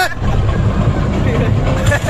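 Film soundtrack over a cinema's speakers: a deep, uneven helicopter rumble from an action scene, with voices.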